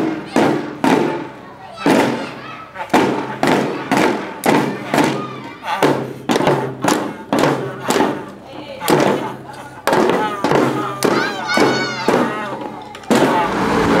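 Children's marching band of drums and brass horns: the drums beat a steady march rhythm of about two strikes a second, and wavering horn notes join in during the second half. The band sound cuts off suddenly shortly before the end.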